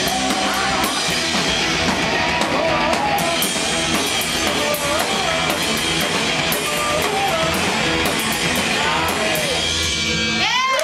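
Live rock band playing loud: drum kit with frequent cymbal hits, electric guitar, and a voice singing a wavering line over them.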